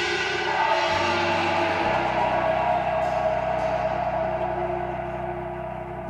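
Struck gongs and cymbals ringing out and slowly fading, one ringing tone sliding a little down in pitch, with a low sustained tone coming in about two seconds in.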